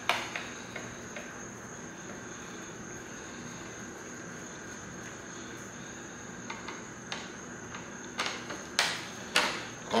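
Hand screwdriver clicking and tapping in small screws on a motorcycle's plastic tail cowl as they are worked out. There is one sharp click at the start, a few faint ones, and a cluster of louder clicks near the end, over a steady faint high-pitched whine.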